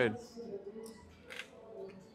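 Playing cards being slid out of a blackjack dealing shoe by the dealer: two short, soft swishes, about half a second in and near the end.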